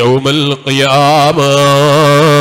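A man chanting an Islamic devotional melody into a microphone, holding long notes with a wavering pitch after a few short breaks near the start.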